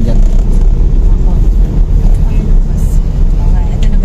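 Steady low rumble inside a car's cabin: engine and road noise.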